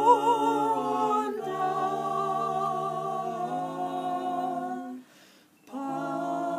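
Five mixed voices singing a slow Esperanto lullaby a cappella in close harmony: long held chords, one change of chord after about a second, then a held chord that breaks off near the end for a breath before the voices come back in.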